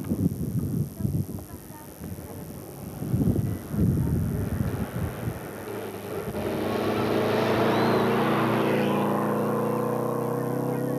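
A rally car approaching at speed on a loose dirt road and passing close by. Its engine and the gravel noise grow loudest in the last few seconds. Sustained music chords come in about six seconds in and carry on under it.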